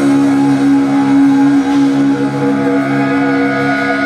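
Live death metal band, heavily distorted electric guitars holding long sustained chords, with a new chord coming in about two-thirds of the way through.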